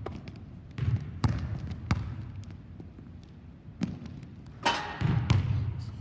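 Basketball bouncing on a hardwood gym floor, several sharp, irregularly spaced bounces as a player runs a step-back move, the loudest about five seconds in.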